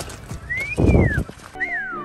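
A two-part wolf whistle: a short whistle that rises and falls, then a long falling whistle, with a low thump under the first part. Music chords come in under the second whistle.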